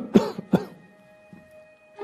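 A man coughing three times in quick succession, the first cough the loudest, over a faint held musical tone.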